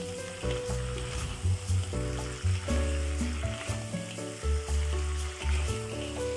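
Crabs sizzling in a chilli sambal paste in a wok as they are stirred and tossed, over background music.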